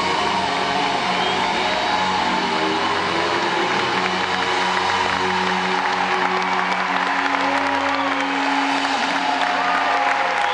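Live rock band's closing chord ringing out in long held notes, while audience applause and cheering build over it in the second half.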